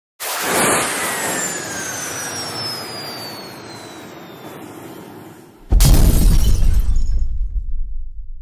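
Title-card sound effects: a sudden noisy whoosh with a falling whistle that fades over about five seconds, then a deep boom hit near the six-second mark that slowly dies away.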